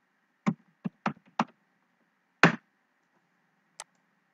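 Computer keyboard keystrokes: four quick key taps in the first second and a half, a louder key strike about two and a half seconds in, then a faint click near the end.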